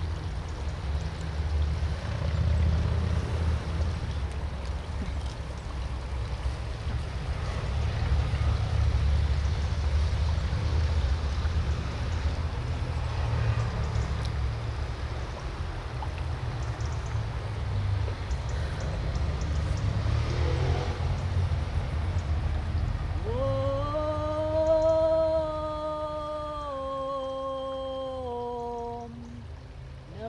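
Wind buffeting the microphone makes a fluctuating low rumble. About 23 seconds in a long held humming tone sets in, stepping slightly down in pitch before it stops, and a second one begins at the very end.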